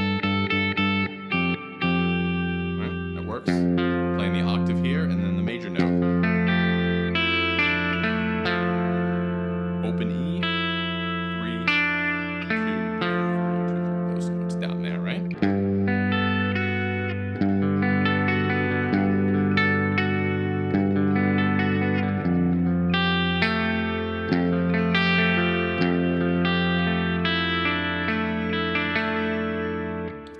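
Electric guitar in drop D tuning playing a slow run of ringing chord voicings over a steady low note, the chords changing every second or two.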